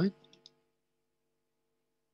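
Near silence: the tail of a spoken word, then two faint short clicks about half a second in, then dead silence.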